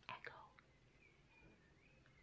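Near silence: room tone, after a soft, breathy trailing-off of a woman's voice in the first half second.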